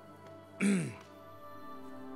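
Background music of steady held tones, with one brief vocal sound that falls in pitch just over half a second in.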